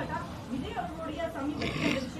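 A man speaking in Tamil, with a short hiss near the end.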